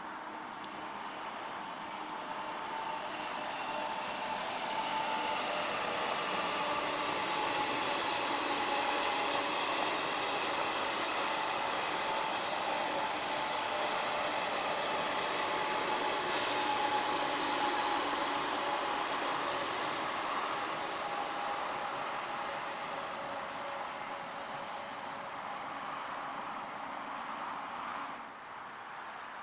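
A train passing on an elevated railway viaduct: a rushing noise with a few steady tones over it, swelling over several seconds, holding through the middle, then fading away near the end.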